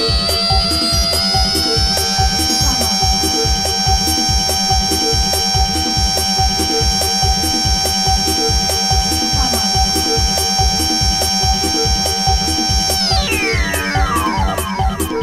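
Electronic dance music from a DJ mix: a steady four-on-the-floor kick drum under a high held synth tone that rises over the first two seconds, holds, then glides down near the end.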